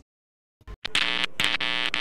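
Electronic sound effect of an end-credit ident: a brief low thump, then two held buzzing tones, each about half a second long, with a short break between them.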